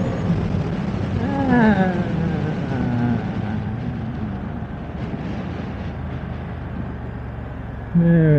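BMW F900R's parallel-twin engine running under wind noise while the motorcycle slows down, the overall sound gradually getting quieter. About a second and a half in, a pitch falls away.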